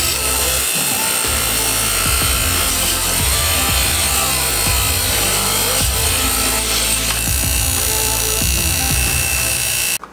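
A bench grinder's wire wheel scrubbing grime off an LS engine valve cover held against it, a loud, steady grinding hiss, with background music over it.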